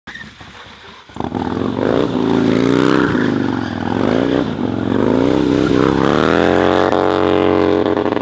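A cruiser motorcycle's engine comes in about a second in and revs up and down several times while the bike is ridden in slow, tight turns, then holds a steady higher note near the end.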